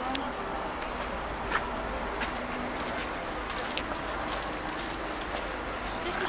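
Open-air ambience of faint, indistinct voices of people nearby, with a low steady rumble and a few sharp clicks and steps on stone paving scattered through it.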